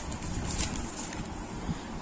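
Steady background noise: a faint, even rushing hiss with no clear source.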